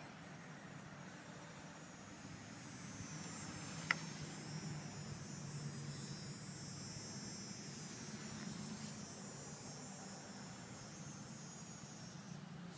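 Faint, steady high trill of insects, coming in about three seconds in over a low hum, with one sharp click about four seconds in.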